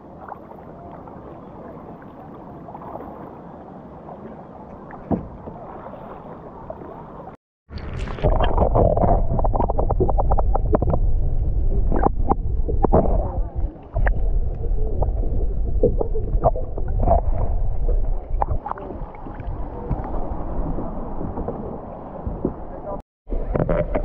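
Gentle water noise at the surface for the first several seconds, then after a sudden cut the muffled sound of a camera held underwater while snorkeling over a reef: a loud, deep rumble of moving water with many scattered clicks and pops.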